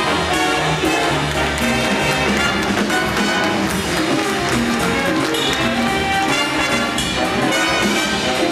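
Jazz big band playing live: a full section of brass and saxophones over bass and drums, with continuous ensemble playing and no break.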